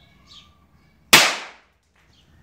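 One Mandarin large red cracker firecracker exploding: a single sharp, loud bang about a second in that dies away within half a second.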